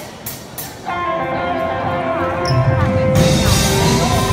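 Live amateur rock band starting a song: a few sharp clicks, then electric guitar notes ring out and are held from about a second in. Near the end the full band with drums and bass comes in much louder.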